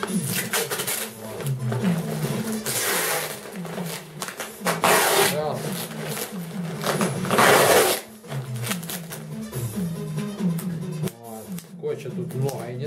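Packing tape pulled off a handheld tape dispenser in four long pulls of under a second each, about every two seconds, as it is wound round a plastic-bag parcel. Background music with a low bass melody plays underneath.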